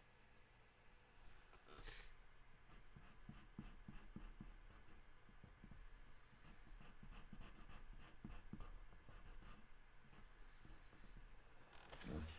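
Faint scratching of an ink pen drawing short strokes on paper, with one sharp click about two seconds in.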